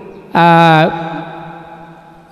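A Thai Buddhist monk's voice in a sung 'lae' sermon, holding one steady note for about half a second through a microphone, then an echo that fades away.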